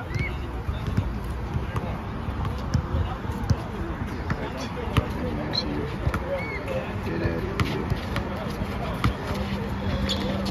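A basketball bouncing on an outdoor asphalt court: irregular sharp thuds as it is dribbled during play.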